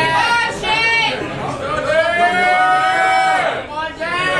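A person shouting, with short calls early on and then one long drawn-out call held for about a second and a half in the middle.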